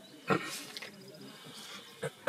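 A short, sharp vocal burst, like a grunt, from a person about a third of a second in, then faint room sound.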